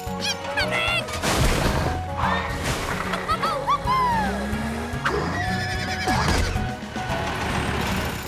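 Cartoon soundtrack: background music with cartoon sound effects, several noisy crashes and many short high chirps that glide up and down in pitch.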